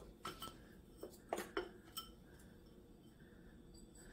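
A few light, separate clinks and knocks in the first two seconds, from frozen mango chunks going into the plastic jar of a Ninja blender.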